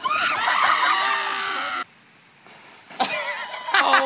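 A group of young men yelling and laughing together, cut off suddenly just under two seconds in. After a quieter moment, voices call out again near the end.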